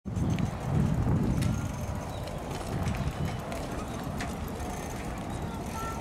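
Outdoor park ambience: a low, irregular rumble on the camera microphone, loudest in the first second and a half, under faint voices of passers-by.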